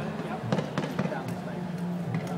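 Renault Sport Mégane's engine running at low revs as the car pulls slowly away, a steady low hum, with a few sharp clicks between about half a second and a second in.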